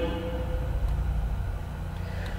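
Low, steady rumble with a faint hiss: background noise of the narration recording, heard in a pause between spoken phrases.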